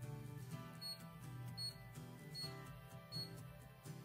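Soft background music with four short high beeps at an even pace, about 0.8 seconds apart: the mini HIFU handpiece signalling each ultrasound shot as it fires against the skin.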